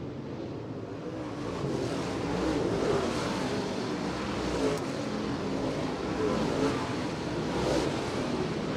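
A pack of dirt late model race cars' V8 engines running hard together, their pitch rising and falling as the cars work through the turns. The sound swells a little louder a second or two in.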